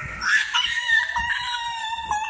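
A toddler's long, high-pitched wail, held and falling slightly in pitch, after a short cry near the start.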